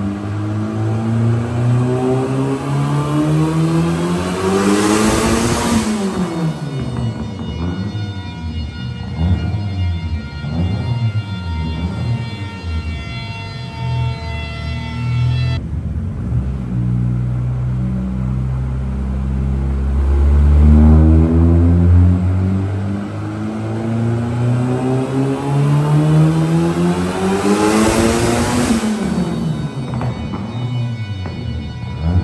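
Turbocharged 2.0 engine of a VW Gol revving up under load on a chassis dynamometer. It climbs steadily to full revs about five seconds in, then winds back down. It settles low for a few seconds, then makes a second climb that peaks near the end.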